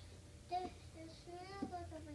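A young girl singing softly to herself in a high voice, a wordless tune in short, sliding phrases.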